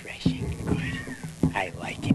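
A person's wordless vocal cries: several short, wavering sounds in a row with gliding pitch.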